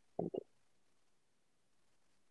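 Near silence: room tone, broken only by two brief faint low sounds just after the start.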